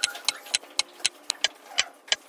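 Clock ticking, about four sharp ticks a second.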